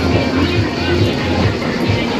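A 1990s-style pop song playing over loudspeakers, with a steady bass beat.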